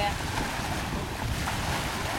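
Small waves breaking and washing onto a sandy shore, with wind rumbling on the microphone.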